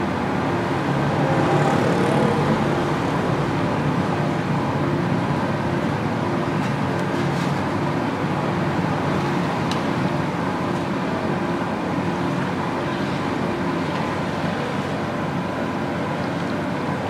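Samosas deep-frying in a large iron kadai of hot oil over a gas burner: a steady sizzle with an even, low rumble underneath. A few faint clicks come between about six and ten seconds in.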